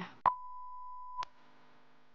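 An edited-in beep: one steady high tone about a second long, switched on and off with a click, of the kind used as a censor bleep. It leaves only a faint hum behind it.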